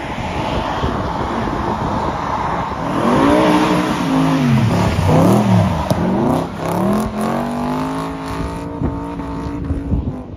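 Drift car's engine revving hard, its pitch rising and falling several times as the car slides sideways through a corner, then holding a steady high rev near the end.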